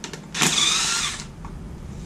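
Cordless drill/driver motor whining in one burst of about a second as it spins an oil pan bolt out of a Jeep 4.0 inline-six, with light clicks before and after.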